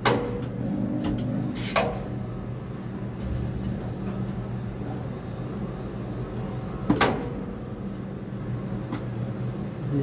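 Steady low machine hum inside a tower crane's cab while it holds a concrete bucket over the pour, with a few sharp clicks, the loudest about seven seconds in, where a faint high whine also cuts off.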